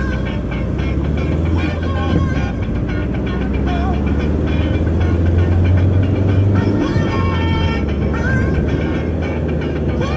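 Inside a moving car: a steady low engine and road rumble, with music playing over it.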